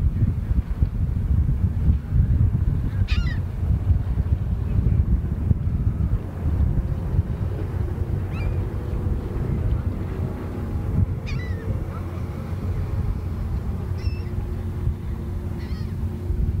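Wind buffeting the microphone throughout, with five short, high calls from birds over it, each sliding downward in pitch. From about six seconds in, a faint steady low hum sits underneath.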